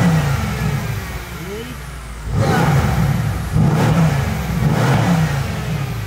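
Mercedes-AMG C63 S twin-turbo V8 revved while parked, heard from the cabin. One strong rev at the start settles back toward idle, then three quick blips follow in the second half.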